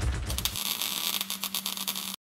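Outro logo sound effect: a loud burst of dense crackling noise with a low rumble at the start and a steady low hum underneath.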